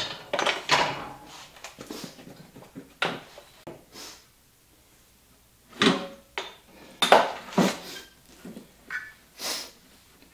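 Hand tools and metal parts clinking and knocking on a Maico dirt bike in irregular clusters as parts are refitted, with a pause of about a second and a half near the middle.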